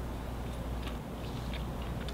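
Faint chewing of a mouthful of pan-cooked fish, a few soft ticks, over a steady low hum.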